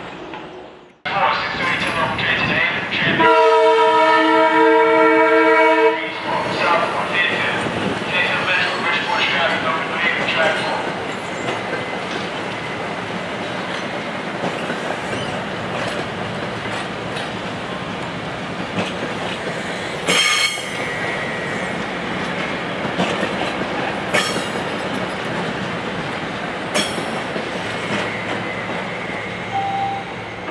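Electric commuter train sounding one horn blast of about three seconds, a chord of several notes, then passing close by with a steady rumble of wheels and clicks over the rail joints, with a few sharp clacks later on.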